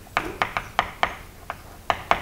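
Chalk tapping and scratching on a blackboard as a figure is written: a quick, uneven run of about seven short, sharp taps.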